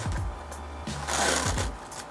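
A brief rustle of a box of zip-lock bags being handled, about a second in, over background music with a steady low beat.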